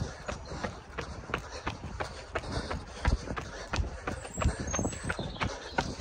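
Running footsteps on an asphalt path at a fast tempo pace, a steady patter of about three strides a second.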